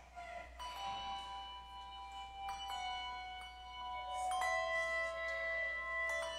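Handbell choir playing a slow piece: chords of bells struck every second or two and left to ring on, growing louder in the second half.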